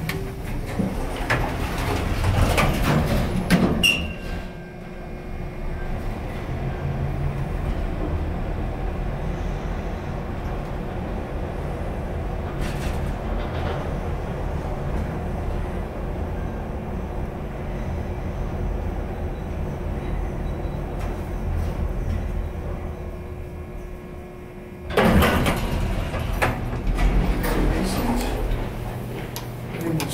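1973 Otis relay-controlled traction elevator: the car doors slide shut, then the car rides down for about twenty seconds with a steady low hum and a faint steady tone. The doors slide open loudly about 25 seconds in.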